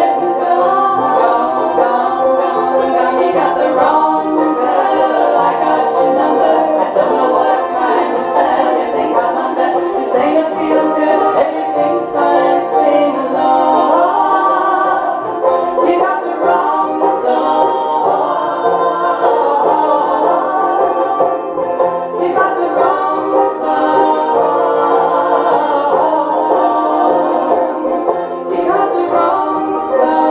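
Women's voices singing in harmony over banjo, mandolin and acoustic guitar, a live country-folk song.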